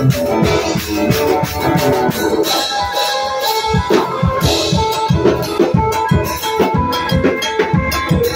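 A live band with electric guitars, bass and drum kit playing an upbeat dance tune with a steady, driving beat, the percussion prominent.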